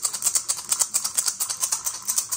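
A pair of wooden maracas shaken in a quick, even rhythm, about six or seven crisp rattling strokes a second.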